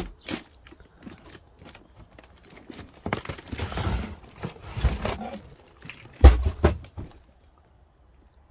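Rustling and knocking as cardboard boxes, plastic bottles and packaging are handled and shifted about, with a heavy thump about six seconds in.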